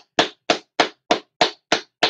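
One person clapping hands in a steady rhythm, about three claps a second, six claps in all.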